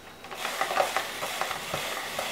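Hand-cranked spiralizer shaving a courgette into noodles: the crank turning and the blade cutting, a steady rasping with many small clicks that starts about half a second in.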